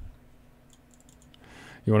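Several faint, scattered clicks of a computer mouse in a quiet room, followed by a man's voice starting right at the end.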